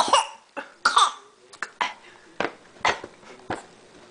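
Short cough-like bursts of voice: two longer ones with a falling pitch at the start and about a second in, then four short, sharp ones about half a second apart.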